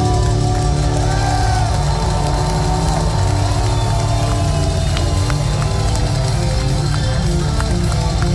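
Symphonic metal band playing live through a concert PA, heard from the floor of the hall, with the crowd's noise mixed in.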